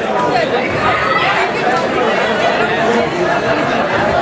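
A crowd of boxing spectators talking and calling out over one another: a steady babble of many voices.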